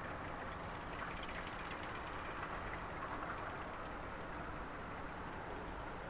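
Steady low background rumble and hiss with no distinct sounds in it.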